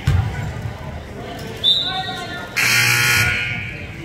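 A basketball thumps on the hardwood floor, a referee's whistle blows briefly about a second and a half in, and the scoreboard buzzer then sounds for nearly a second.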